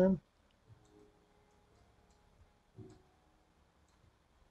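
Faint, scattered computer mouse clicks, a few a second and irregular, as a 3D model is dragged and rotated on screen.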